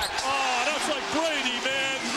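A man's commentary voice talking continuously over arena background noise on a television basketball broadcast.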